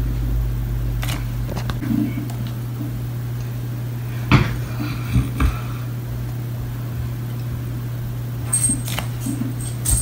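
A steady low hum with a few brief soft knocks about four to five and a half seconds in.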